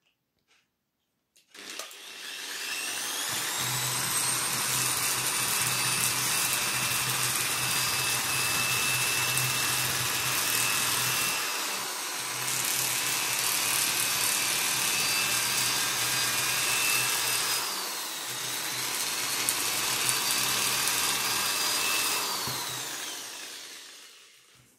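Corded electric drill spinning a twist bit against a fish to scrape off its scales: the motor whine rises as it spins up, holds steady with a rasping scrape, slows and picks up again twice, then winds down near the end.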